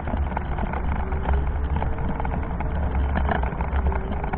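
Meyra Optimus 2 power wheelchair rolling over brick paving: a steady low rumble with continual small rattles and clicks, carried through the camera mounted on the chair. A faint steady whine comes in about a second in.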